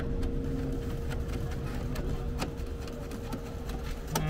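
A steady mechanical hum with a low rumble underneath, and a few faint clicks as an M6 bolt is started by hand into a steel mounting bracket.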